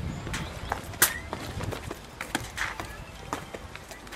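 Footsteps of people stepping down a minibus's door steps onto the ground: a string of irregular knocks, the sharpest about a second in.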